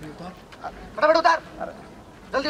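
A person's short, strained shouted cry about a second in, like the 'arre' yells around it, with only faint background noise otherwise.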